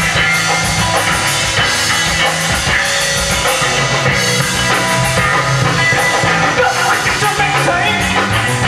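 Live rock band playing loud on stage: electric guitar, bass guitar and drum kit with a steady driving beat.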